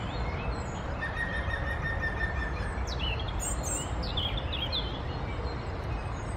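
European robin singing: a short phrase of high, thin, quickly changing notes from about three to four and a half seconds in, over a steady low background rumble. A single long, level whistled note sounds about a second in.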